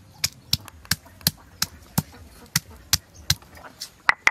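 Stone pestle pounding garlic cloves and ginger on a flat stone grinding slab: a steady run of sharp knocks, about two to three a second, as the cloves are crushed.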